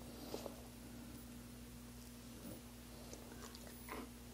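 A cockatoo's beak nibbling at a dog's fur: a few faint soft clicks and rustles, with a sharper click near the end, over a steady low electrical hum.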